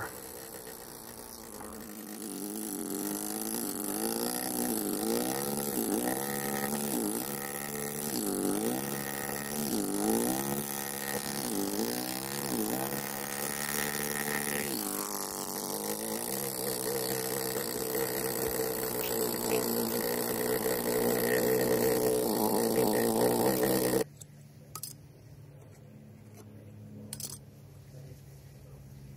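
Pneumatic air chisel running against stone as it cuts along a template outline. Its buzz rises and falls in pitch as it works, then cuts off suddenly about four seconds before the end, followed by a couple of light clicks.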